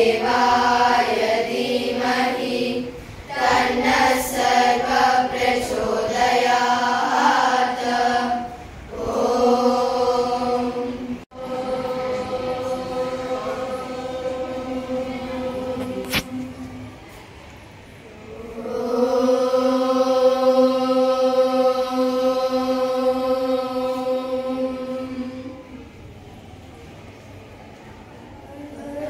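A class of girls chanting a prayer together in unison: several seconds of changing syllables, then two long held tones of about seven seconds each with a short breath between, the second fading out near the end.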